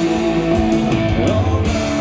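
Live rock band playing between sung lines: guitar over bass and drum kit, loud and steady.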